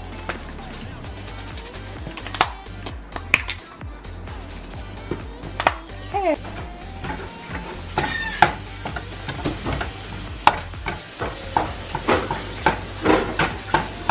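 Wooden spatula tapping and scraping against a nonstick frying pan as ground beef is stirred and broken up, with many short irregular knocks and a light sizzle from the meat. Background music plays underneath.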